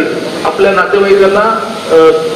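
A man speaking into a stage microphone, his voice amplified and hissy, after a short pause at the start.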